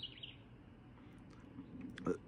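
Faint birds chirping, the chirps fading out a moment in, over quiet outdoor background.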